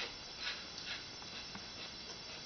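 A quiet room with a few faint, short ticks and scrapes as a wooden Jenga block is nudged slowly out of the tower with a fingertip.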